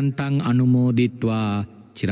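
A man's voice chanting Pali merit-sharing verses of a Buddhist blessing. He holds long notes on a steady pitch in short phrases, with brief breaks between them.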